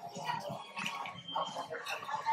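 Faint background chatter of other voices and shop room sound, with a brief thin steady tone about halfway through.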